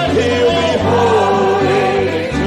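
Gospel singing with instrumental accompaniment: a sung melody with vibrato over sustained low chords that change about every second.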